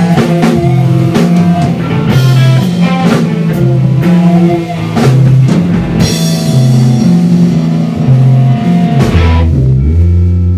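Live rock band playing loud: distorted electric guitars, bass and drum kit driving through a riff. About nine seconds in the drums stop and a low chord is left ringing.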